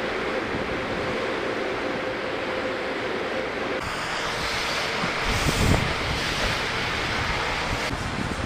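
Steady rushing wind noise on the Jeep's exterior camera microphone, with a faint steady hum under it for the first few seconds and low gusts of buffeting about five seconds in.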